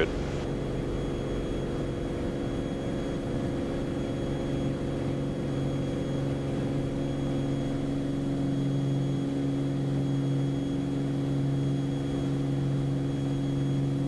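Beechcraft Bonanza's piston engine and propeller at full takeoff power during the takeoff roll, a steady drone at an even pitch.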